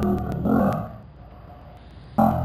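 A man's voice speaking in a distorted, low-fidelity room recording, pausing about a second in.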